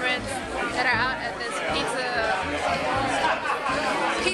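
Voices talking and chattering over background music.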